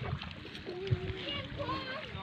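Faint, distant voices of children talking and calling, over a low, steady background rumble.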